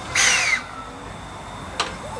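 JNR C56 160 steam locomotive letting off steam: a loud hiss of steam lasting under half a second near the start, then one sharp short puff near the end.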